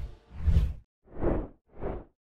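Three short whoosh transition sound effects, about two-thirds of a second apart, each quieter than the one before; the first has the most low rumble.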